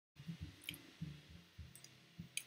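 Faint clicking at a computer: two small clicks about a second apart, over a few soft low thuds.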